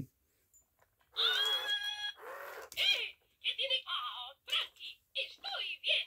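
Spanish-language talking Mickey Mouse plush toy ('Baila y Baila' dancing Mickey) speaking in a high-pitched cartoon Mickey voice through its small speaker. It starts about a second in with a drawn-out exclamation, then runs on in short, chattering phrases.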